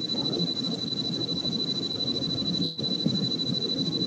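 A steady high-pitched electronic whine over a rough, uneven noise on a video-call audio feed, briefly dipping near the three-quarter mark.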